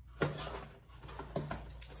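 Cardboard packaging being handled and moved: soft rustles and a couple of short knocks, the clearest just after the start and again about a second and a half in.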